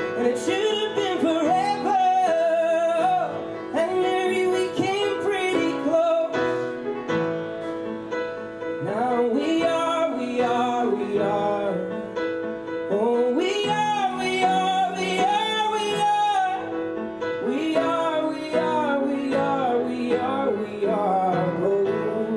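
Upright piano played live, with a man singing over it, one song running on without a break.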